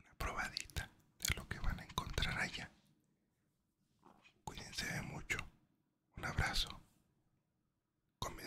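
A man whispering close into a microphone, ASMR-style, in about four short phrases separated by pauses.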